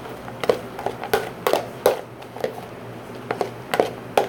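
Someone chewing a mouthful of Froot Loops cereal soaked in eggnog, heard as a run of short, irregular crunches.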